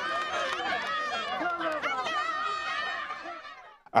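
Crowd of people talking and calling out all at once, the many voices fading out near the end.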